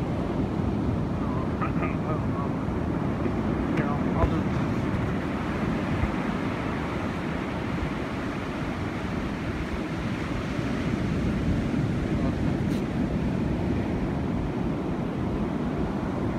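Steady rushing noise of wind on the microphone mixed with ocean surf breaking on the beach.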